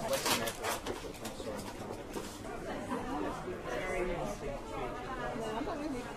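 Indistinct background chatter of a group of people in a large room. In the first second a burst of crackling and rustling as the sides of the cardboard cake box are folded open.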